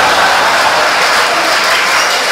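Live theatre audience applauding, a loud, steady clatter of many hands clapping.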